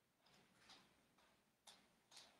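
Near silence with faint, crisp ticks about twice a second, alternating stronger and weaker.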